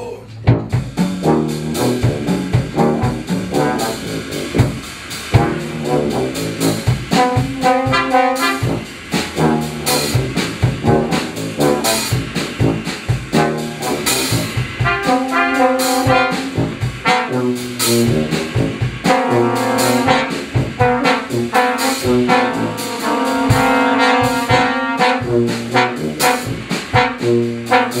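Brass ensemble of two trumpets, French horn, trombone and tuba with a drum kit playing a jazz piece. Chords and melodic lines rise over a rhythm of sharp drum hits, starting at once loud.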